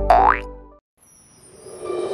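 Cartoon-style sound effect from a channel intro jingle: a quick rising whistle-like glide over the jingle's held final chord, which dies away within the first second. After a moment of silence, soft music with bell-like tones fades in.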